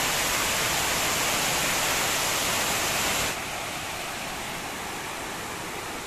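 Water rushing over a dam's overflow spillway: a steady, even rush of whitewater. It drops a little in level about three seconds in.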